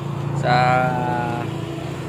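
A man's voice holding one long drawn-out syllable over a steady low engine hum, typical of a motorcycle engine idling close by.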